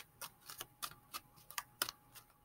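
Tarot cards being shuffled by hand: a quick, irregular run of light clicks and taps.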